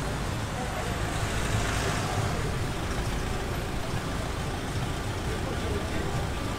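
Street traffic noise: a steady low rumble of a city bus and cars idling in a blocked street, with indistinct voices mixed in.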